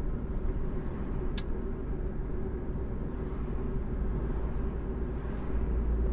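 Steady low rumble of engine and road noise inside a moving car, with a single sharp click about a second and a half in.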